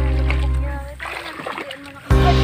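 Background music fades out about halfway through, giving way to bare feet splashing through shallow muddy water, with voices.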